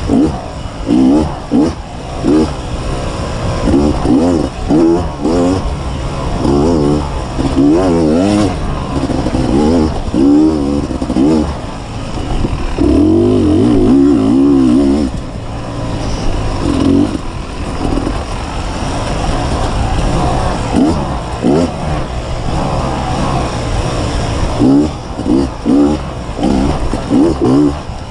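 2015 Beta 250RR two-stroke dirt bike engine under load, the revs rising and falling in short bursts of throttle, with one longer steady pull about halfway through.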